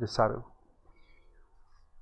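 A man's voice trailing off on one last spoken syllable in the first half second, then faint room tone.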